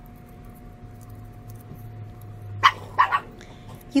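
A dog barking twice in quick succession, two short barks about a third of a second apart, over a faint steady background hum.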